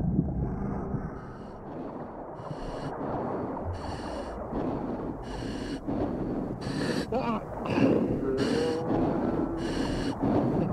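Underwater sound: a steady low rumble of moving water with a hissing, bubbling burst about once a second, like a diver's exhaled bubbles, and a couple of short gliding tones near the end.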